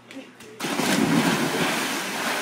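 A group of people jumping into a swimming pool at once: a sudden loud splash about half a second in, followed by churning, sloshing water.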